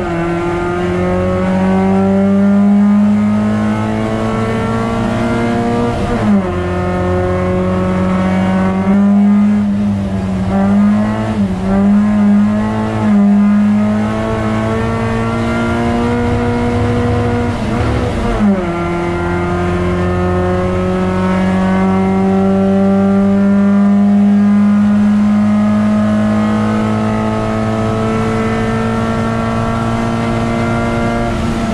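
Dacia Logan race car's engine heard from inside the cabin, held under hard load with the revs climbing slowly. Its pitch breaks sharply at gear changes about six and eighteen seconds in, and wavers with the throttle between about nine and thirteen seconds.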